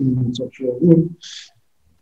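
Speech only: a voice speaking for about a second, a short hiss, then a pause.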